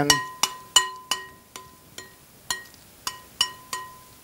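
A spoon stirring a thick avocado mixture in a glass mixing bowl, knocking the bowl about a dozen times at uneven intervals. After each knock the glass rings briefly with a clear bell-like tone.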